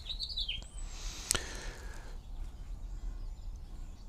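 A few faint, high bird chirps near the start over a low steady background hum, with a single sharp click a little over a second in.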